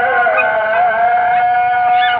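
A voice singing one long, held note that wavers slightly in pitch, in a chant-like vocal melody.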